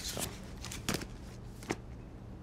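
Books being handled and packed into a cardboard moving box: a few light knocks and rustles.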